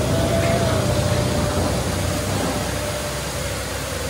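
Automatic rug washing machine running, a steady noisy machine sound with a low hum underneath.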